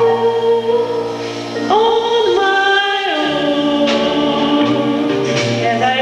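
Live band performance: a woman sings into a microphone, holding long notes that slide between pitches, over double bass, drums and piano heard through the hall's PA.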